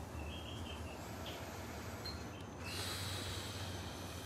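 Faint early-morning outdoor ambience: a steady low hum with short, high chirps now and then. A soft rushing noise swells for about a second past the middle.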